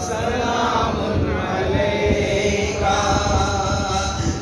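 Unaccompanied male chanting of a salat-o-salam, the devotional salutation to the Prophet, in long held melodic lines.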